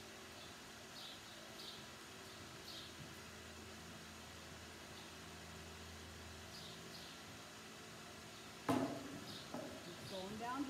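Faint ambience with brief, high chirps every second or so, and one loud thump near the end.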